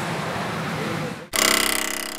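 Steady din of a pachinko parlour for about a second, then a sudden cut to a loud, bright, ringing electronic sound effect that fades over the next second and a half.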